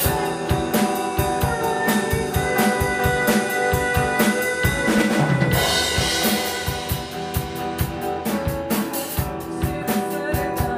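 Electric guitar and drum kit playing a rock song, apparently an instrumental passage: a steady kick and snare beat under sustained guitar notes, with a cymbal crash about halfway through.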